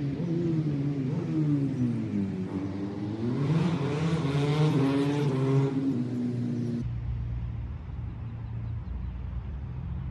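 An engine running nearby, its pitch sinking and then climbing again over a few seconds, like a vehicle slowing and accelerating. About seven seconds in it gives way abruptly to a steady low hum.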